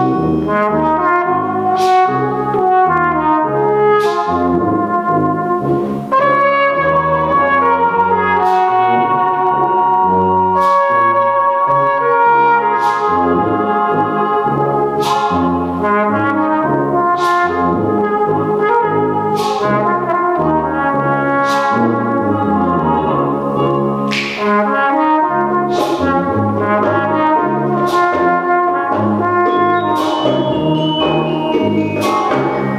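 Brass band playing a pop-song arrangement, with a flugelhorn taking the solo melody over a bouncing bass line and a sharp percussion stroke about every two seconds.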